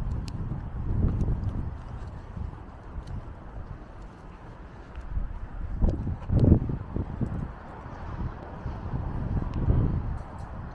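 Gusty wind buffeting a handheld camera's microphone: a low rumble that swells and fades, with the strongest gust a little past the middle. Faint footsteps on tarmac tick underneath.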